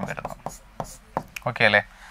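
A pen tapping and scraping on a writing board screen in a handful of short, separate strokes as figures are written and underlined.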